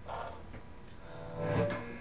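Electric guitar played softly: a faint pluck near the start, then a note left to ring out in the second half.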